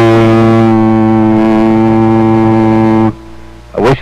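A single steady low tone with many overtones, held at one pitch for about three seconds and then cut off: a held sound fed into a CB radio transmitter to drive its modulation, a test of positive modulation.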